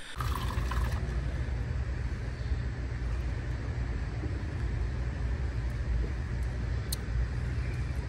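Steady low rumble of background noise in a large indoor hall, with a single faint click about seven seconds in.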